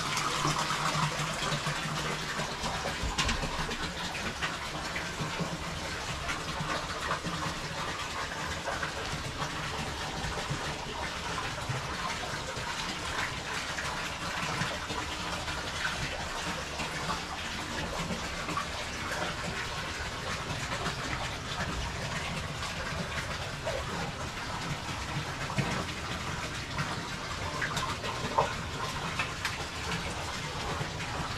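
Hot spring water pouring steadily into a concrete soaking tub, a continuous gushing flow, with two brief knocks near the end.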